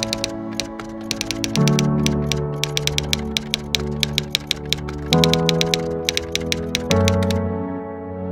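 Typewriter keystroke sound effect: a rapid, uneven run of clicks that stops shortly before the end. Under it, slow background music holds soft chords that change every couple of seconds.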